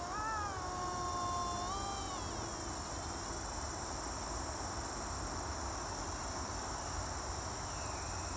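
Distant whine of the Nano Goblin flying wing's 1507 brushless motor and propeller: the pitch rises as it comes in, holds steady, then drops and fades about two seconds in. Steady chirring of crickets runs underneath.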